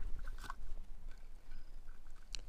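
Faint handling noises as a rusty iron lock is moved about on rubble: a few small clicks about half a second in and light scraping, over a low steady rumble.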